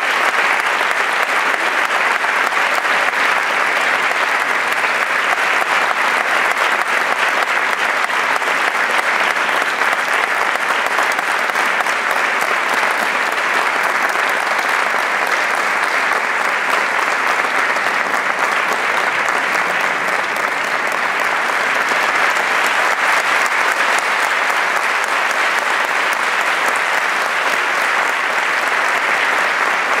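Audience applauding steadily, a dense even clapping that neither builds nor fades.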